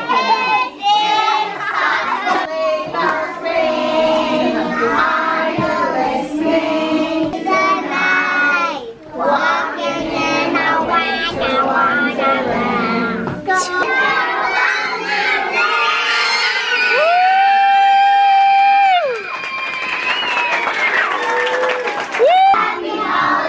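A group of young children singing a song together, ending in one long held note near the end.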